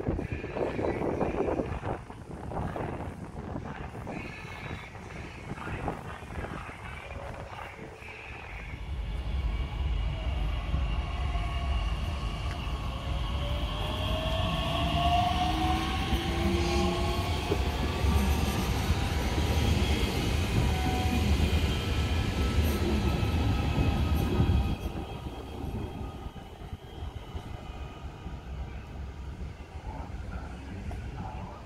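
A DB Class 442 (Talent 2) electric multiple unit running past close by: a steady rumble of wheels on the track, with an electric motor whine rising in pitch as the train picks up speed. The rumble stops suddenly about 25 seconds in.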